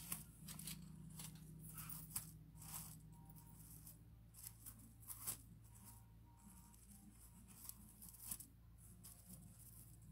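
Near silence: faint scattered clicks and rustles of jewelry and its tag being handled, over a low steady hum.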